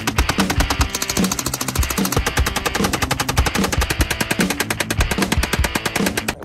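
Fully automatic gunfire: rapid, continuous strings of shots, many a second, running without a break, over background music with a steady beat.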